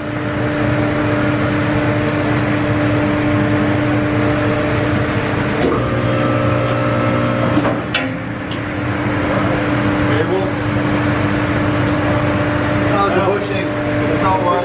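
Electric-hydraulic power unit of a two-post vehicle lift starting up and running with a steady hum as the lift raises a pickup cab off its frame. The sound changes briefly about six seconds in.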